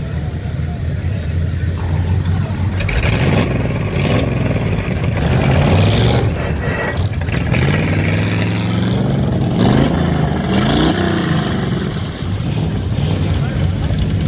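Engines of vintage hot rod roadsters running at a drag race start line, a steady low idle with throttle blips that rise and fall in pitch, most between about five and twelve seconds in.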